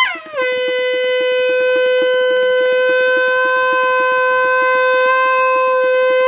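A small hand-held curved horn blown in one long, loud blast. The note drops down in pitch in the first half second, then is held at one steady pitch.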